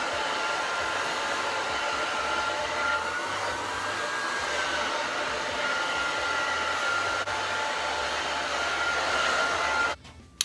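Handheld hair dryer running steadily, a rush of blown air with a motor whine that rises a little in pitch for a moment a few seconds in; it cuts off abruptly at the end.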